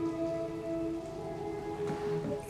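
Steady rain falling, under soft background music holding long sustained notes.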